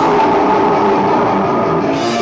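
Live heavy rock band playing loud, with distorted electric guitar chords ringing on.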